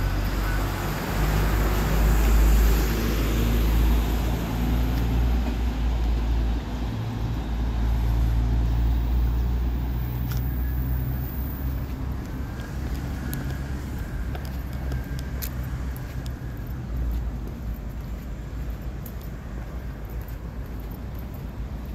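Road traffic: motor vehicles passing on the street, with a low engine rumble and tyre noise. It is loudest over roughly the first ten seconds, then eases off.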